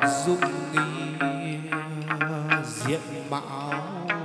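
Chầu văn ritual music: plucked string notes picked several times a second over a long, held sung note that wavers and bends near the end.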